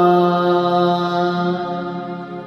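A man's voice in devotional chant, holding the last drawn-out syllable of "Hanuman" on one steady note that fades away over the last half-second.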